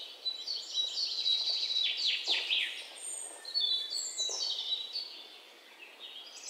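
Birds chirping and singing: many short, high whistled notes and quick downward chirps, over a faint steady hiss.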